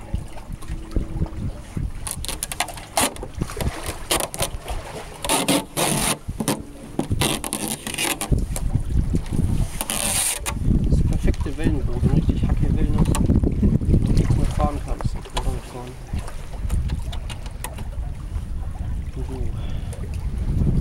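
Wind buffeting the microphone in a low rumble that grows stronger in the second half, with clicks and rustling scrapes of hands handling a model jet boat's hull and jet-drive unit; louder scrapes come about five and ten seconds in.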